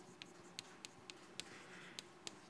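Chalk writing on a blackboard: four sharp taps as the chalk strikes the board, with faint scratching between them.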